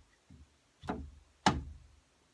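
A soft thump, then two sharp knocks about two-thirds of a second apart, the second one the loudest, each with a short ringing tail.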